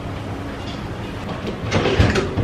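Hands working at a stainless-steel refrigerator door over a steady low background, with a louder, brief rubbing noise near the end.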